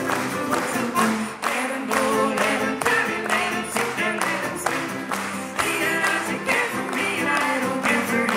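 Live folk band playing an instrumental break: fiddle carrying the melody over a strummed acoustic guitar, with hand-claps keeping a steady beat about twice a second.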